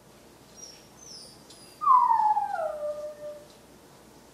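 A dog gives a single howl about two seconds in, sliding steadily down in pitch over about a second and a half.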